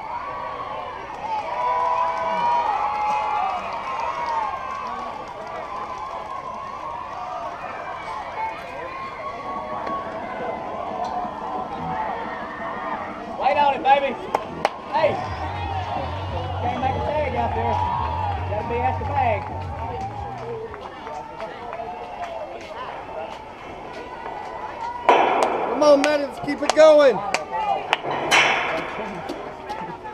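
Background chatter of spectators and players at a softball field, with a few sharp knocks about halfway through. Voices become louder shouts and calls near the end.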